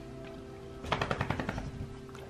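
A dog's metal collar tags rattling in a quick run of about a dozen clicks for under a second, about a second in, over faint background music.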